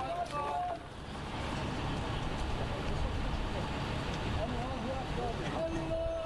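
Outdoor ambience: indistinct voices over a steady low rumble like distant traffic, with a brief voice in the first second and a held voice-like tone starting just before the end.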